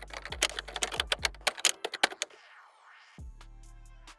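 Typewriter-style typing sound effect for text appearing on screen: a fast run of key clicks for about the first second and a half, over background music with a low bass line. A brief soft rush of noise follows around the middle before the music carries on.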